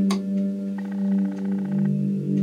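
Instrumental backing music: sustained held chords over a steady low note, with a brighter, fluttering higher part coming in about a second in and dropping out near the end.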